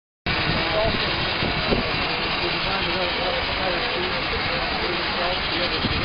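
Indistinct voices talking over a loud, steady noise.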